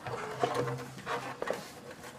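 A woman's strained, effortful grunt and breathing as she heaves a heavy water-dispenser jug, held as one low voiced tone, with a couple of light knocks near the end.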